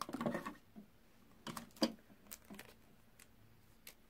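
Light clicks and taps of craft tools and materials being handled on a tabletop, with a short rustle at the start and a sharper click a little under two seconds in.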